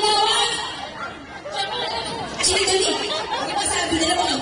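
Several people talking at once: crowd chatter with speech.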